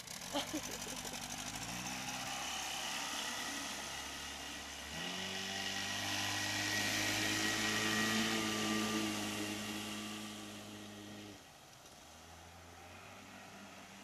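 Outboard motor on a small hydroplane accelerating away: the engine note steps up about two seconds in and again about five seconds in, then holds steady at speed. About eleven seconds in it drops away suddenly to a fainter, lower note.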